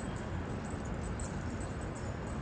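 Steady low rumble of city background noise at night, with a faint high steady tone over it.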